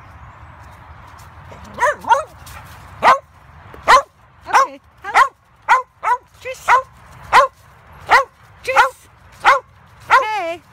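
A dog barking repeatedly: about a dozen sharp barks, starting about two seconds in and coming a little more than one a second. Before the barking there is a soft rustle, like footsteps through dry fallen leaves.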